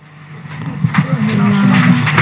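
A low, indistinct voice with no clear words, starting quiet and growing louder.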